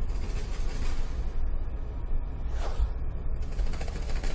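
Rapid rattling flutter of flying books flapping their pages, over a steady low rumble, with a falling whoosh a little past halfway.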